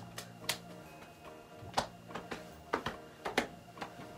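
Hand claps and slaps in a quick patterned routine, about ten sharp claps in irregular groups, over soft background music.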